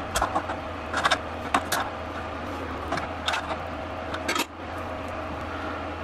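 Small open-end spanner on a brass push-fit fitting of a 3D printer extruder: a handful of light, scattered metallic clicks as the fitting is worked on, over a steady low hum.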